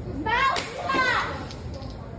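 High-pitched shouting voice for about a second, words unclear, with a sharp click about half a second in; then store background noise.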